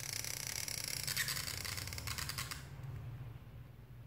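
Black felt-tip marker pen scratching across paper in one long stroke of nearly three seconds, then stopping suddenly.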